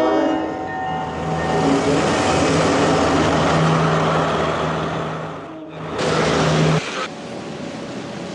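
A train horn fading out in the first second, then a train running past with a loud rushing noise over a steady low engine drone. The sound dips briefly and then cuts off abruptly about seven seconds in, leaving a quieter hiss.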